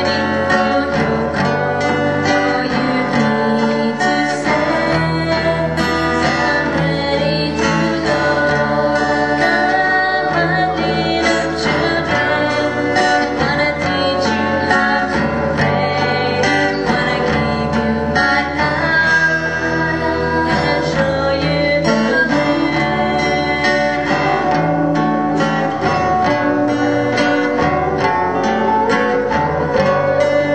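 Live band playing a worship song: acoustic and electric guitars with keyboard and hand percussion, and singing over them. The music runs steadily at an even loudness.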